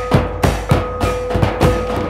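Drum-led folk dance music with a steady beat of about three strokes a second, and a held pitched note sounding on and off over it.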